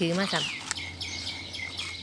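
A bird calling: a falling whistled note, then a high steady note repeated in short pieces for about a second.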